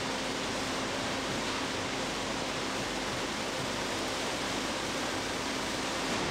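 Steady factory machinery noise: a continuous even rush with a faint low hum, from the running plant and the rotating cooling table where warm peppermint sugar mass is being kneaded.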